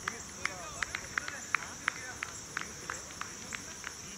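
Steady high-pitched drone of an insect chorus, with many short sharp chirps scattered through it and faint distant voices.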